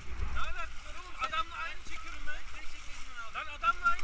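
Indistinct calls from the raft crew over a steady noise of river water, with wind rumbling on the camera's microphone, strongest at the start.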